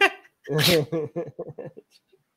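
A person laughing: a sharp, breathy burst of laughter about half a second in, then a run of short laughs that trails off.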